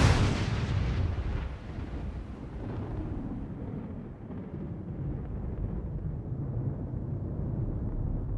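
A single loud gunshot from a pistol, sudden after silence, with a long fading tail, followed by a steady low rumble.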